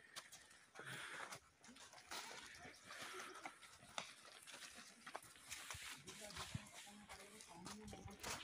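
Faint outdoor background of distant voices, with scattered light clicks of footsteps on a dirt path.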